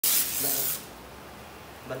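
Hook-and-loop strap on a spine board's body harness being ripped open: one loud, high rasping rip lasting under a second at the start.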